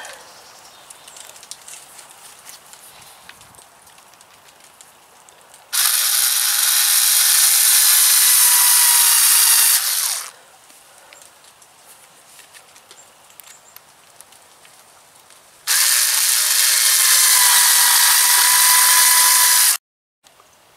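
Power drill driving screws into an old wooden window frame: two steady runs of about four seconds each, some six seconds apart, with quiet handling in between.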